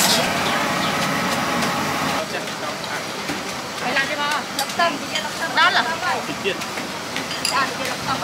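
Street-food stall ambience with background voices talking, heard mostly in the second half. A steady rushing noise fills the first couple of seconds and drops away, and a few light clinks come through.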